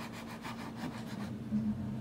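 A kitchen knife sawing through a rolled slice of bread, making a series of faint rasping strokes against a plastic cutting board.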